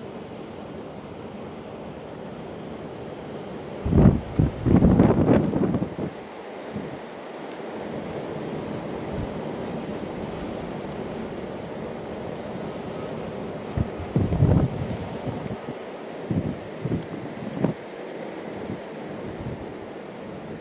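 Wind blowing through a snowstorm. Strong gusts buffet the microphone about four seconds in and again several times later on.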